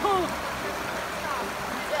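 Shallow mountain creek running steadily, with a short "oh" exclaimed at the start and a faint voice about a second in.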